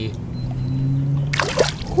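A released largemouth bass splashes the water as it kicks free of the hand at the boat's side, a short burst about a second and a half in. A steady low hum runs underneath until then.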